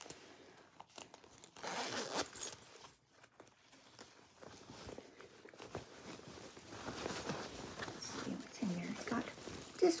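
Zipper on a fabric crossbody bag being pulled, with rustling of the bag's fabric as it is handled; the loudest stretch comes about two seconds in, then quieter handling noise.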